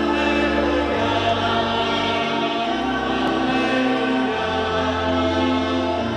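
Church choir singing slow, held chords that change every second or two, with low bass notes beneath.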